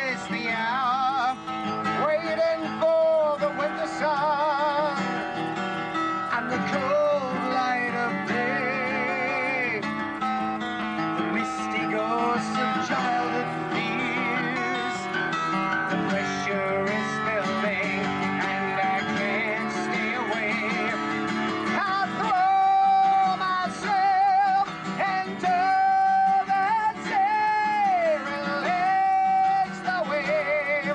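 A man singing sustained notes with vibrato, accompanied by a strummed and picked acoustic guitar, played live.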